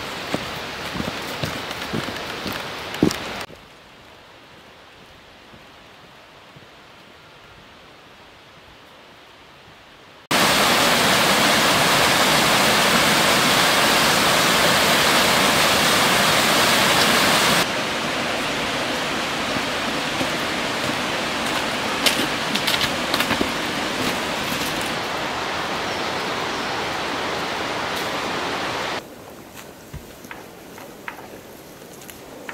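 Steady rushing noise of water, such as rain or a stream, that changes level abruptly several times: it drops away about three seconds in, comes back much louder about ten seconds in, eases somewhat about eighteen seconds in and drops again near the end. A few short clicks and knocks sound over it.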